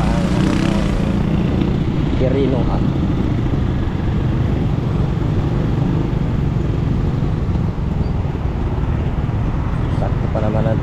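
Yamaha motor scooter engine running at low speed in slow traffic, a steady low rumble with road noise. Short snatches of voice come in near the start and about two seconds in.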